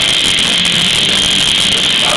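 Live heavy metal band playing an instrumental stretch between vocal lines: a loud, steady wall of distorted electric guitars, bass guitar and drums.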